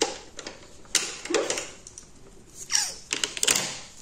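Makeup items being handled on a table: a few sharp plastic clicks and knocks, about a second in and again near the end, with a short scraping slide between them.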